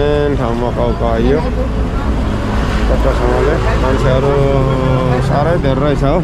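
A person's voice, at times holding notes steady for a second or more, over a steady low hum.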